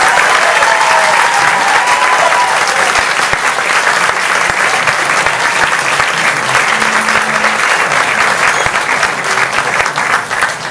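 Audience applauding steadily, many hands clapping together, right after a brass band piece has ended.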